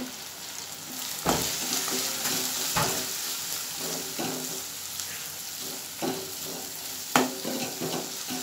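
Peanuts, tomato and ground spices frying in oil in an aluminium kadhai, a steady sizzle while a steel ladle stirs them. The ladle knocks sharply against the pan three times, about a second in, near three seconds in and near the end.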